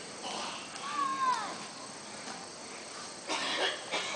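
A single animal call about a second in, rising briefly and then falling in pitch, with short bursts of rustling noise shortly before it and again near the end.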